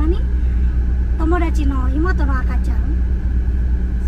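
A car engine idling, heard from inside the cabin as a steady low rumble and hum, with a woman's voice talking briefly in the middle.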